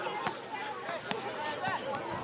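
Several players' voices shouting and calling over one another on a rugby pitch as a maul forms and goes to ground, with a few short sharp knocks among them.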